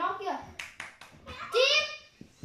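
A child's voice calling out, with a few sharp claps about halfway through and a loud, high-pitched call near the end.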